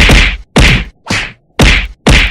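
Four cartoon whack sound effects in quick succession, about two a second, each a hard hit with a short noisy tail.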